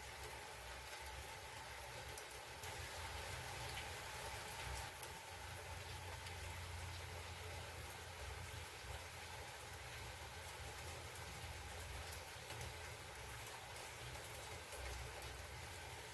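Faint steady hiss with a low hum: room tone, with no distinct sound standing out.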